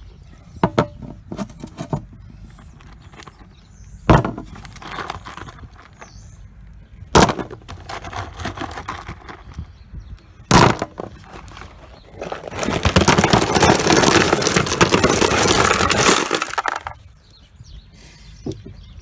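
Stones dropped one at a time into a dished plastic water butt lid, each landing with a sharp knock a few seconds apart, then a load of stones tipped in together, rattling and clattering for about four seconds near the end.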